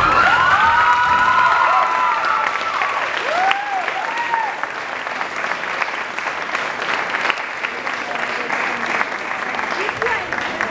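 Audience applauding, with a few whooping cheers in the first few seconds. The clapping eases slightly after about two seconds and carries on steadily.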